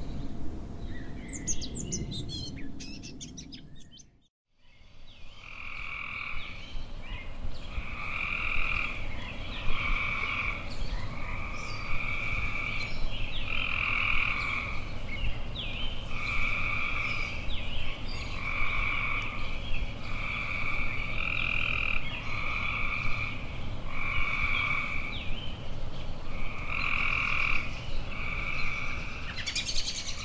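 A frog croaking over and over in a steady rhythm, each call about a second long and repeated every second or two, with birds chirping faintly in between. In the first few seconds, before a brief dropout, only bird chirps over outdoor background noise are heard.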